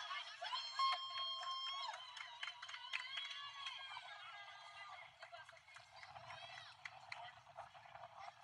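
Distant voices of players and spectators shouting and calling across a ball field, louder in the first few seconds and fading after about five seconds.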